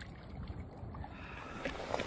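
Lake water sloshing and lapping around a wading angler's legs, with a low rumble of wind on the microphone.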